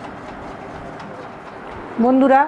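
Soft cooing of a bird over a steady background hiss.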